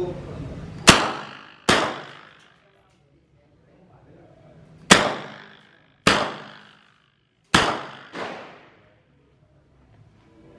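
HK MP5 9mm submachine gun fired in semi-auto, single shots: five sharp reports at uneven spacing, each ringing off briefly, with a fainter report just after the last.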